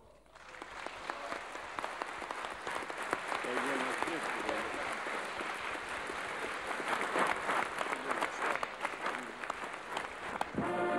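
A large audience applauding, building up over the first second or two and then holding steady, with a few voices heard among the clapping.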